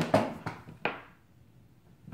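Handling noises as alligator-clip leads and a power supply lead are connected on a wooden table: a few short rustles and knocks in the first second, the sharpest a click a little under a second in, then near quiet.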